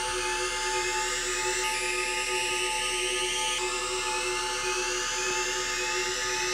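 Sustained synthesizer drone with no drums: several steady held tones and a high, drill-like layer of short rising sweeps repeating less than a second apart. This is the beatless outro of a gabber hardcore track.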